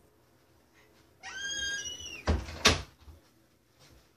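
A door hinge squeaks in a high, nearly steady tone for about a second, then the door knocks twice as it swings shut, the second knock the loudest.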